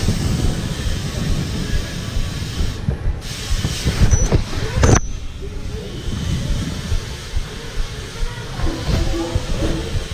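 BMX tyres rolling over a tiled indoor floor, a steady rumble and hiss from the riding, with a few sharp knocks about four to five seconds in.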